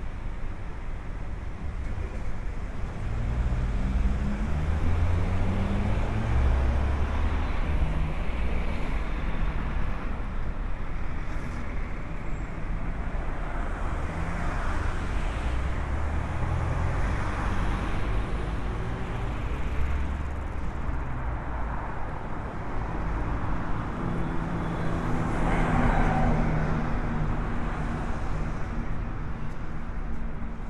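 City road traffic: cars and box trucks running past with a steady low engine rumble, individual vehicles swelling louder as they pass about halfway through and again near the end.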